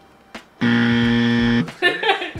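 A game-show buzzer sound effect: one flat, steady buzz of about a second that starts about half a second in and cuts off suddenly, marking a wrong answer. Laughter starts just after it.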